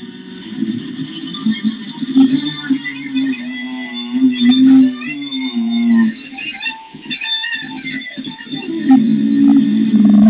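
Ibanez electric guitar playing a lead in F sharp, with sustained notes that waver in pitch as they are bent and shaken with vibrato, most clearly in the middle of the stretch, over low sustained tones.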